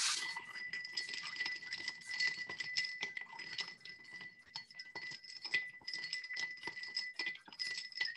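Ice rattling inside a metal cocktail shaker shaken vigorously by hand: a rapid, uneven run of sharp clinks throughout.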